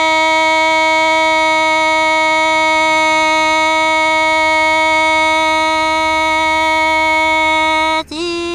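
A woman singing Hmong kwv txhiaj, holding one long note at a steady pitch without wavering.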